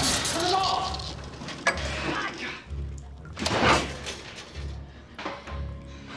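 Electrical sparks crackling from a shorting motor unit whose brushes are worn and which is revving too high, dying away, with a sharp snap about two seconds in and a hissing burst near the middle. Low music comes in underneath toward the end.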